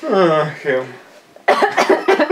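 A woman laughing hard: a long vocal cry that slides down in pitch, then, about one and a half seconds in, a fit of quick bursts of laughter.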